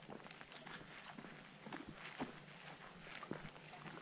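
Faint footsteps of a person walking on a grassy dirt trail, soft irregular steps, with a faint steady high-pitched tone behind them.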